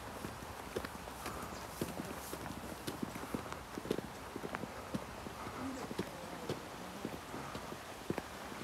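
Footsteps of a person walking on a paved path: short, irregular shoe taps, a few a second, over a steady outdoor hiss.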